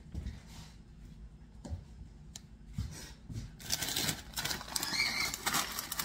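A few soft knocks, then from a little past halfway a plastic bag of frozen peas crinkling as it is handled.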